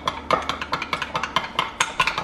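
A spoon stirring a thick mayonnaise dressing in a glass measuring cup, clicking rapidly and unevenly against the glass at about six or seven clicks a second.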